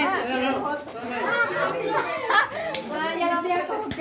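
Several people talking over one another in overlapping chatter, with one sharp click just before the end.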